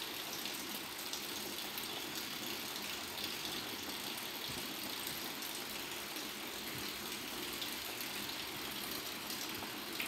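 Steady hiss of a lit gas stove burner heating a kadai, even throughout with a few faint clicks.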